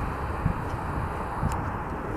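Steady outdoor background noise: a low, uneven rumble with a hiss above it.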